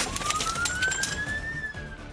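Police car siren wailing, its pitch rising for about a second and a half and then starting to fall, over a music bed.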